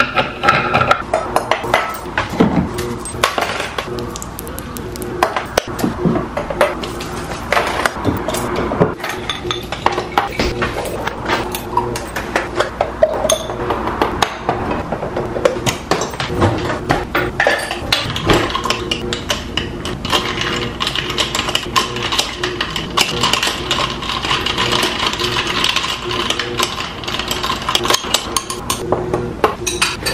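Kitchen clatter: repeated clinks and knocks of glassware and utensils on a countertop while a small IMUSA espresso maker is capped and brewing.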